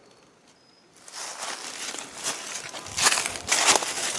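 Footsteps crunching through dry fallen leaves, starting about a second in and getting louder near the end.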